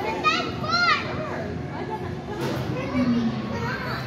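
Children playing and calling out in a large indoor play hall, a steady hubbub of kids' voices, with one child's high-pitched rising and falling calls in the first second.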